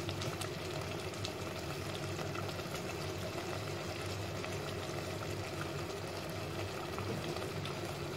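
Mash daal (urad lentils) simmering in an aluminium pot on a gas burner: a steady, quiet bubbling hiss with faint scattered pops over a low steady hum.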